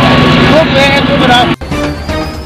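Busy street noise with traffic and a man's wavering, crying voice. About a second and a half in, it cuts off abruptly to a news-channel music ident.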